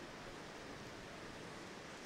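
Steady faint hiss of a large hall's room tone, with no distinct events.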